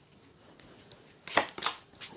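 Tarot cards being handled: two sharp card taps about a third of a second apart, about a second and a half in, as cards are set down on the table.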